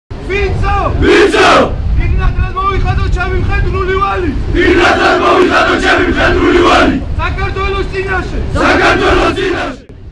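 A large group of soldiers shouting words in unison, in several loud phrases with short breaks between them: a unit reciting its military oath together.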